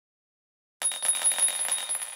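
Sound effect of brass cartridges dropping and clinking together: a quick run of sharp metallic clinks with a high ringing tone, starting about a second in and fading away.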